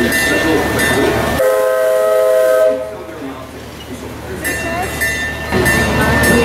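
A steam whistle blows once for about a second, a chord of several steady tones, over background chatter and a steady hum. After it the sound drops lower for a couple of seconds before the background noise comes back.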